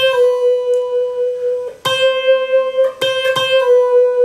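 Electric guitar (a Stratocaster) playing slow single notes high on the E string: the 8th-fret note picked and re-picked, with a pull-off to the 7th fret, each note left to ring. There are four picked attacks, the second nearly two seconds in and two more close together about three seconds in.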